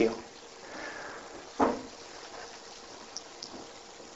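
Low room tone heard through a speaker's microphone, broken once about a second and a half in by a single short sound, and by a few faint ticks near the end.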